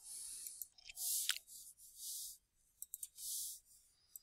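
Faint computer mouse clicks, a few scattered and a quick cluster of them about three seconds in, with short soft bursts of hiss between them.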